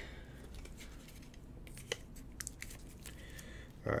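Scattered faint clicks and light rustling of thick framed trading cards and plastic card holders being handled.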